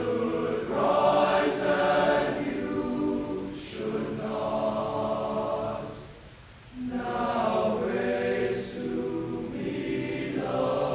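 Tenor-bass choir of male voices singing sustained phrases together, with a brief pause for breath about six seconds in before the next phrase.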